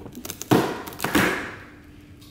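Cardboard door of a beer advent calendar being pushed in and torn open to free a can: a few small clicks, then two louder rips of cardboard, the first about half a second in, each fading quickly.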